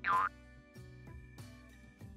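A short comic cartoon sound effect, one quick falling tone, followed by soft background music with a light steady beat.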